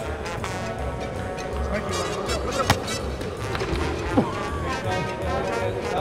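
Background music with a bass beat, with a sharp knock about two and a half seconds in.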